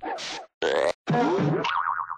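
Cartoon sound effects: three short springy boings in a row, the last one longer and ending in a warbling, wobbling pitch.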